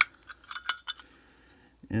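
A few sharp metallic clicks and a clink in the first second as a Zippo lighter's insert is pulled out of its metal case and handled.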